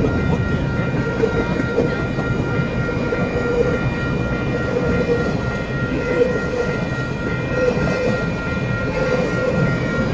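Empty freight wagons rolling past close by, wheels running on the rails in a steady, heavy rumble. A steady high ringing tone sits over it.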